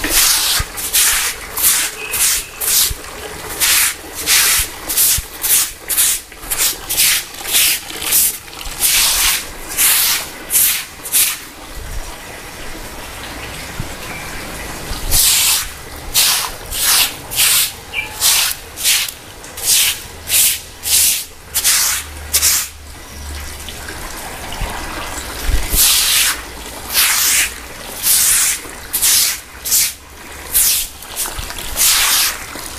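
Stick broom of thin palm-leaf ribs sweeping shallow floodwater across a concrete floor: quick swishing strokes, about two a second, with a pause of a few seconds midway.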